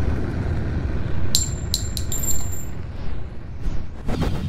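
Sound effects of an animated intro: the low rumble of a boom dying away, with four sharp metallic clinks about a second and a half in that ring briefly at a high pitch.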